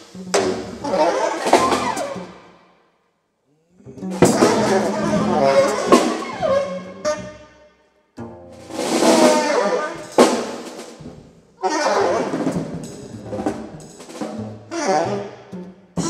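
Free-improvised jazz from an alto saxophone, double bass and drum kit, played in short, dense bursts that stop abruptly. There is a full silence about three seconds in and a brief gap near eight seconds.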